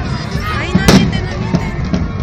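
A firecracker goes off once with a sharp bang about a second in, the loudest sound here, over the shouting of a crowd.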